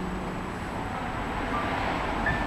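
A pause in live music, filled with steady outdoor background noise, like distant traffic; a last low note fades out right at the start, and a faint short tone sounds about one and a half seconds in.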